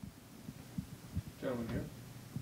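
Quiet room with a few faint low thumps, then a brief faint voice about one and a half seconds in.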